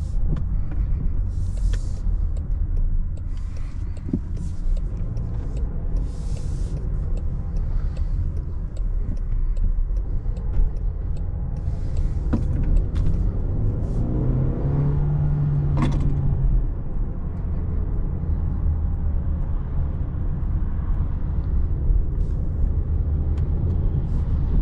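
Cabin sound of a 2024 Range Rover Evoque with its 2.0-litre four-cylinder petrol engine under way: a steady low engine and road rumble, with bursts of hiss in the first few seconds. A brief steady hum rises out of it a little after halfway, ending with a sharp click.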